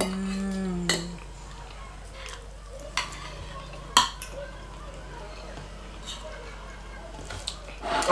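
A person eating hums a held, appreciative "mmm" for about the first second. Then a few sharp clinks of a metal spoon and fork against a ceramic plate follow, the loudest about four seconds in.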